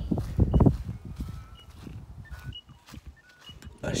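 Faint, short bird chirps and whistles, scattered and thin, after a loud low rumble in the first second.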